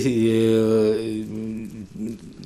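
A man's voice holding one long, steady vowel for about a second and a half, fading out near the end: a drawn-out hesitation sound between words.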